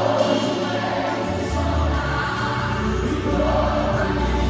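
Live gospel worship music: voices singing together over a band with drums, a deep bass coming in about a second in.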